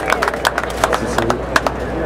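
Scattered hand claps from a ballpark crowd as the applause dies away, irregular single claps that thin out toward the end, over a murmur of crowd voices.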